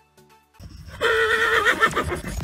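A horse whinnying: one quavering call about a second long, beginning about a second in.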